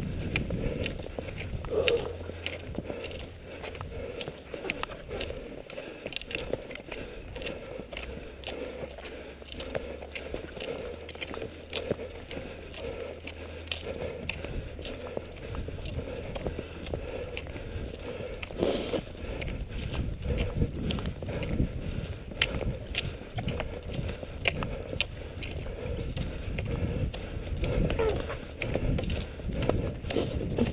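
Cross-country skis sliding over a thin, freshly broken snow track, with a steady run of short clicks and crunches from the pole plants and strides.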